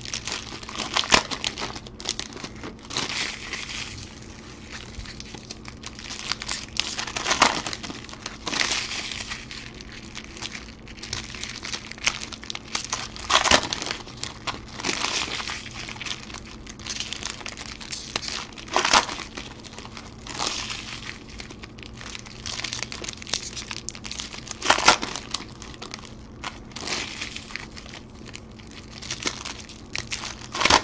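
Foil wrappers of Topps Chrome football card packs crinkling and crackling as packs are handled and torn open, with cards handled between. The sound comes in irregular bursts with sharp snaps.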